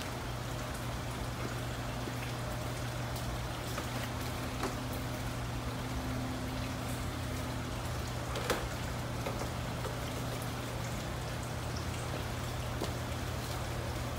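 Steady patter of water with a low hum underneath, and a few faint clicks.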